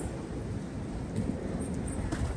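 Steady low outdoor background rumble, with faint scattered ticks.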